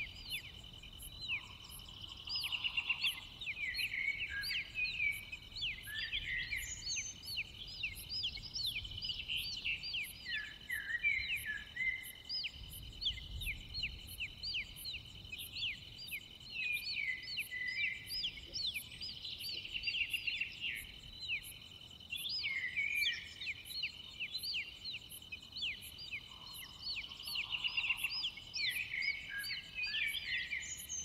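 Nature recording of many birds chirping in short, quick downward-sliding calls over a steady insect drone of crickets, with a faint high pulse repeating somewhat more than once a second.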